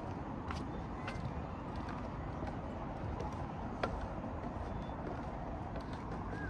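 Footsteps knocking a few times on the wooden boards of a footbridge, over a steady low outdoor rumble.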